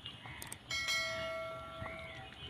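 A bell-like chime sound effect rings out suddenly under a second in and fades away over about a second and a half, the notification ding laid over a subscribe-button animation. A few faint short clicks sound around it.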